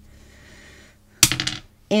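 A sharp click about a second in, followed by a quick clatter of lighter clicks, like small hard pieces knocking together.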